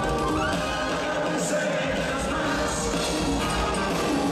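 Live band playing an instrumental passage of a Latin pop song, with electric guitar, bass, drums and saxophones. A high sliding note dips and rises again right at the start.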